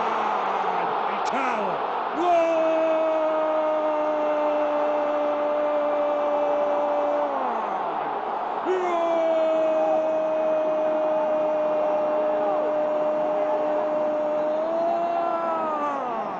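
A football commentator's drawn-out goal cry: two long held shouts, each lasting about five or six seconds, steady in pitch and falling away at the end, over stadium crowd noise.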